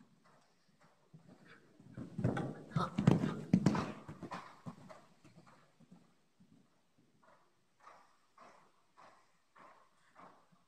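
Horse's hooves striking the sand footing of an indoor arena: a loud run of close hoofbeats from about two seconds in, then a steady rhythm of fainter hoofbeats, a little under two a second, as the horse moves away.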